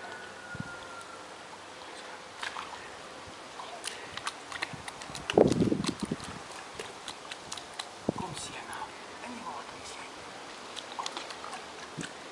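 Scattered splashes and slaps of pool water as a young tiger paws at the surface from the edge, busiest around the middle. The loudest moment is a short, low vocal sound about five and a half seconds in, with another brief one near eight seconds.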